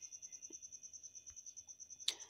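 Near silence with a faint, steady high-pitched trill, pulsing about a dozen times a second.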